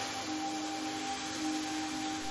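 Soft meditation background music: a few long, held tones that sound like a singing bowl or drone, over a steady soft hiss.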